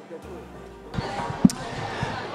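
A few sharp knocks over a low hum and hiss; the loudest knock comes about one and a half seconds in.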